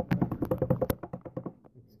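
An improvised drum roll: a rapid run of taps, about ten a second, fading out after about a second and a half.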